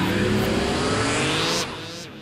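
Electronic outro sting with a rising synth sweep that builds and then cuts off about one and a half seconds in, leaving a fading tail.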